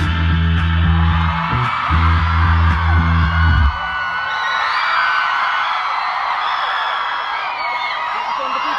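Live band's closing chords: two long, heavy bass-laden held chords that cut off sharply about three and a half seconds in, followed by a crowd screaming and cheering.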